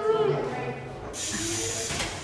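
A woman's voice trails off, then a steady hiss comes in about halfway through and lasts about a second.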